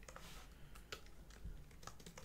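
Faint typing on a computer keyboard: irregular single keystroke clicks.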